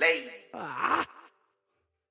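Two short wordless vocal ad-libs from a male singer with no backing music, the second dipping down and back up in pitch. Both are over a little more than a second in.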